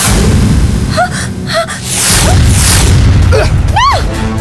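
A loud, deep rumbling sound effect from the film soundtrack, with a woman's short gasping cries over it and a louder rising-and-falling cry near the end.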